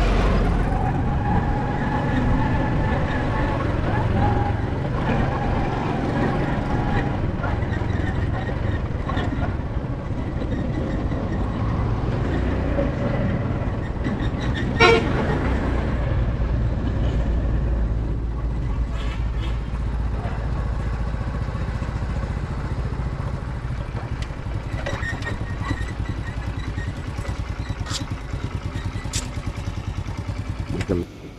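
Motorcycle engine running with road and wind noise while riding, with one short vehicle-horn toot about halfway through.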